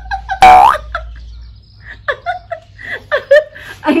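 A woman's short, loud squeal about half a second in as her face is shoved down into a flour-covered pillow, followed by bursts of laughter.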